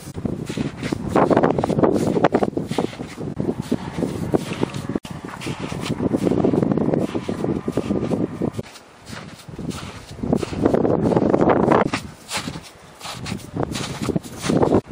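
Footsteps crunching through deep snow, with wind buffeting the microphone. The sound drops quieter for a moment about nine seconds in and again near the end.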